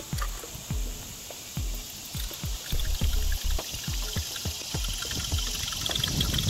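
Water splashing and dripping in many small, irregular splashes.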